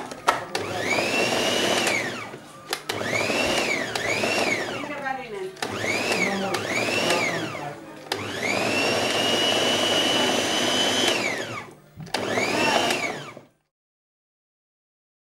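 Small electric blender chopping leafy greens in short pulses. The motor whines up and winds down about six times, the longest pulse about three seconds, then stops.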